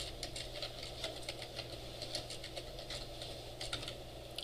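Typing on a computer keyboard: a quick, uneven run of quiet key clicks, several a second.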